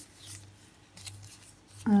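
Thin plastic broken-glass nail foil sheets rustling and crinkling softly as fingers leaf through them.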